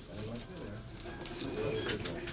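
Low, muffled voices talking indistinctly, with a few light clicks and taps.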